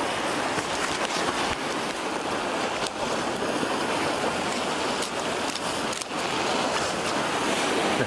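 Sea surf washing against a rocky shore: a steady rushing noise, with a few light clicks.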